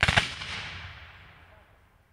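A ceremonial black-powder salute fired once: a sudden loud report that rolls away and fades over about a second and a half.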